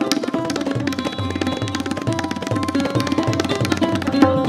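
Tabla played in a rapid stream of strokes on the treble drum (dayan), with deep, repeated bass strokes from the bayan, accompanied by held melodic notes from the sarod.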